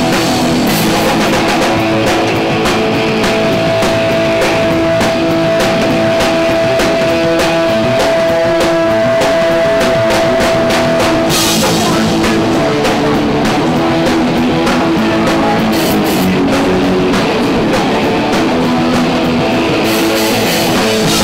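A punk rock band playing live with no singing: distorted electric guitar, bass guitar and a driving drum kit with crashing cymbals. A high note is held for several seconds through the first half.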